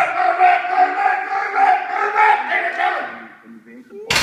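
Yelling during a heavy bench press rep: a long, loud held shout at a steady pitch that tails off about three seconds in.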